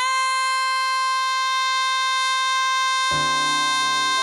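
A woman's singing voice holding one long, steady note. Lower backing music comes in under the held note about three seconds in.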